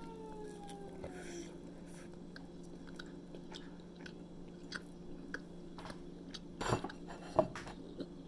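Close-up chewing of a soft pepperoni roll, with small wet mouth clicks throughout and two louder bites or crunches near the end. A steady low hum runs underneath.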